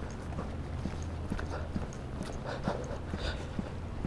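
Footsteps of a person walking on a paved sidewalk, about two steps a second, over a steady low rumble.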